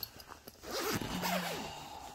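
A zipper on a fabric weekender bag being pulled, one rasping stroke of about a second that starts just after half a second in.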